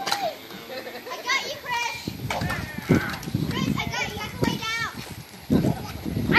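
Children shouting and squealing as they play, with a couple of sharp knocks, the loudest about halfway through.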